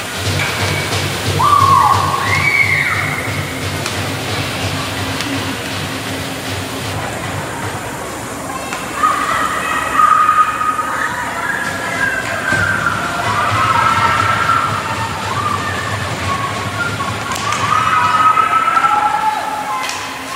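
Raised voices calling and shouting, echoing in a large indoor ice rink, with pitched cries coming and going throughout and busiest in the second half.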